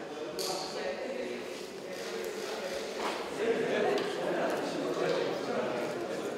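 Indistinct chatter of several people talking at once in a large gallery hall, growing a little louder a few seconds in.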